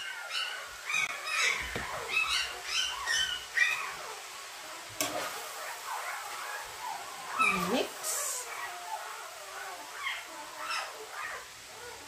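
Puppies whining and whimpering, high-pitched cries that rise and fall in quick succession, with a longer falling whine past the middle. A metal spatula knocks against a frying pan about five seconds in.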